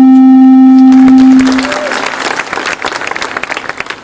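A crowd applauds, the clapping building about a second and a half in and fading toward the end. Before it, a steady low tone holds through the public-address sound and then stops.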